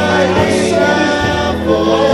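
Church praise team of men and women singing a gospel worship song together into microphones, over a steady low accompaniment.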